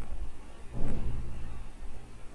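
Low background rumble that swells briefly about a second in.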